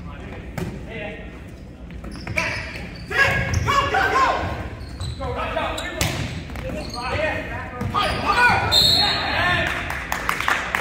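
A volleyball rally in an echoing gym: the ball is struck several times with sharp smacks, one of them a spike at the net about six seconds in. Players and spectators shout and yell from about two and a half seconds in, growing louder toward the end.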